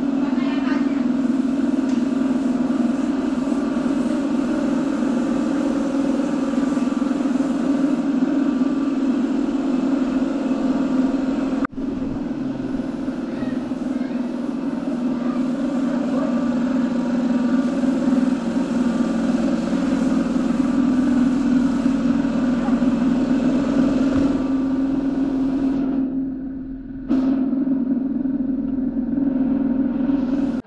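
A loud, steady low drone, like a running motor, with a faint mutter of voices; it breaks off for an instant about twelve seconds in.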